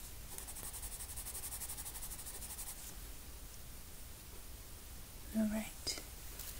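Rapid, scratchy back-and-forth strokes of a drawing tool on paper, several a second, as a dark shadow is shaded in over the first few seconds. Near the end comes a short hummed "mm".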